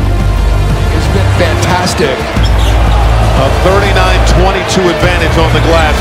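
A basketball being dribbled on a hardwood court, with sharp bounces heard over arena crowd voices. Background music with a steady deep bass runs underneath.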